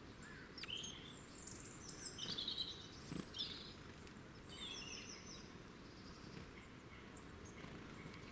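Small woodland songbirds calling and singing in short high chirps and trills: a busy cluster in the first few seconds and another burst about five seconds in, over a steady low outdoor background noise.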